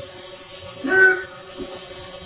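A single short call from a person's voice about a second in, over a steady hum and background hiss.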